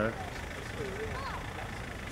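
Steady low outdoor rumble of wind and distant engine noise on the microphone, with a faint, brief pitched sound about halfway through.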